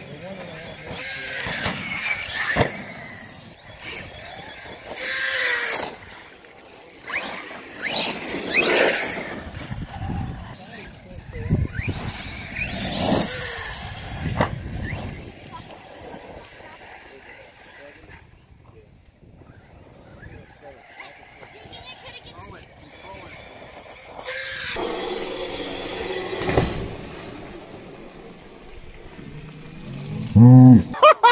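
Electric RC trucks' motors whining as they rev up and down in repeated rising and falling sweeps, with tyre noise on loose dirt and grass.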